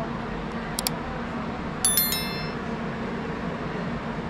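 Railway platform ambience with a steady low hum, a couple of short ticks just before a second in, and a brief bright metallic clink about two seconds in that rings and fades within half a second.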